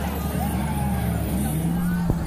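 Fairground ride machinery running as a steady low hum, with a motor tone that rises and then holds level near the end, over the fairground din.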